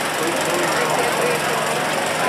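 A small engine running steadily with a fast, even beat, under the chatter of a crowd.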